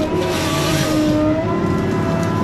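A heavy logging machine's diesel engine and hydraulics running under load, with whining tones that shift in pitch and a burst of hiss about half a second in.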